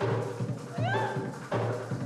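Kumina drumming in a steady beat of about two deep strokes a second. A little before halfway, a short high vocal cry rises and falls over the drums.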